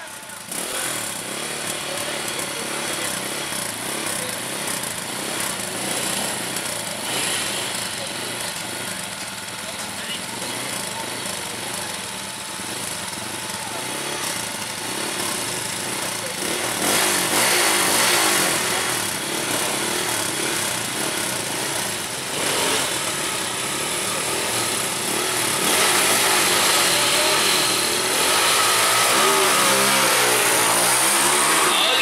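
Stock 100cc Honda EX5 single-cylinder four-stroke drag bikes revving at the start line, engines blipping and wavering in pitch. Near the end two bikes launch, their engine notes climbing as they accelerate away.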